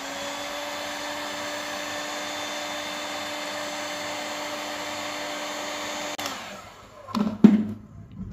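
A handheld electric heat gun runs steadily, its fan motor humming under the rush of blown air as it shrinks clear heat-shrink tubing over a banana plug. It cuts off about six seconds in, and a few knocks follow near the end.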